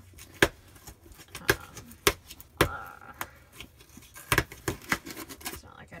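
Cardboard shipping box being pried and torn open by hand, without scissors: a run of sharp cardboard-and-tape snaps and knocks, with a short rip about two and a half seconds in.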